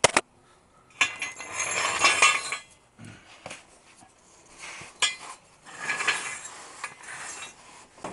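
Metal transmission crossmember being slid back and forth across the truck's frame rails: a sharp metallic knock at the start, then two stretches of metal scraping with clinks.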